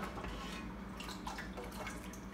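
Faint sloshing and dripping as a wooden spoon is worked through thin banga (palm-nut) soup in a stainless steel stockpot and lifted out, with a few soft splashes.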